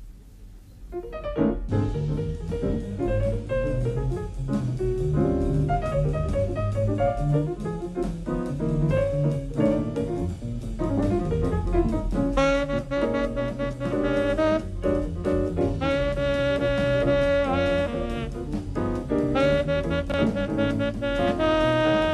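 Jazz quartet playing: the Steinway grand piano, double bass and drum kit come in about a second in after a quiet start. A tenor saxophone joins about twelve seconds in, playing long held notes over the band.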